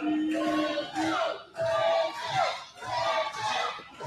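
People's voices talking and calling out in a hall, with no clear words, one voice drawing out a long note at the start.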